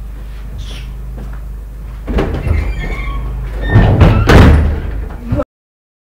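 A door being opened and banged shut, with a knock about two seconds in and louder bangs near the end, over a steady low hum. The sound cuts off suddenly.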